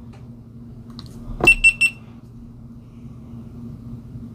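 GoPro Hero 9 Black camera powering on: a click from the button press about a second and a half in, then three quick high-pitched startup beeps in a row.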